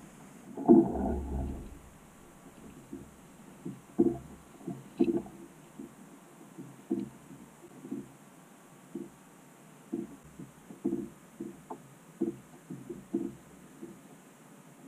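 Faint, irregular small slaps and sloshes of water against a kayak hull, about one or two a second, one a little louder about a second in.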